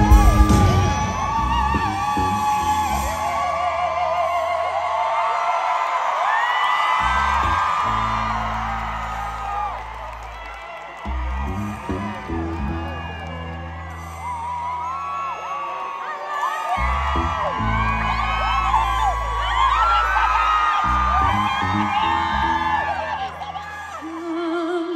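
Live performance of a slow soul ballad: long, held bass notes changing every few seconds under wavering singing, with whoops from the crowd.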